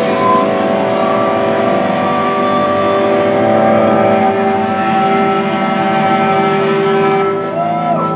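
Electric guitars and bass ringing out in a steady drone of held notes, without drums, at the close of a rock song. A short bend in pitch comes near the end.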